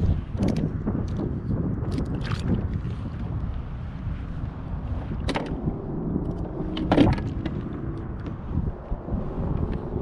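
Wind buffeting the camera microphone on a kayak at sea, a steady low rumble. A few sharp clicks and knocks from handling a fishing rod and gear in the kayak break through, the loudest about seven seconds in.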